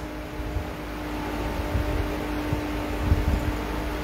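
Steady mechanical hum with a faint held tone over a low rumble: room background noise from a running machine.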